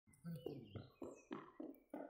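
A faint voice speaking quietly in short, broken bursts.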